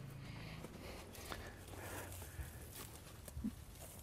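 Faint footsteps on dry dirt and grass, a few soft, irregular scuffs over low background noise.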